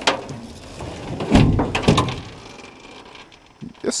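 A metal jon boat being flipped right side up, its hull clanking and thudding onto the grass about a second and a half in.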